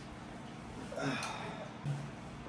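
A chair creaking under a man's weight as he sits down on it: a short squeak that bends in pitch about a second in, then a brief low sound near the end.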